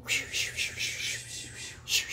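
A voice making a rhythmic run of short, breathy, unvoiced hisses, about four a second, with a stronger one near the end.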